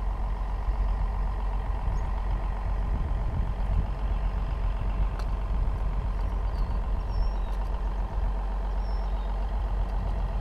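A work boat's engine running at idle nearby: a steady, even low rumble with a constant hum, unchanging throughout.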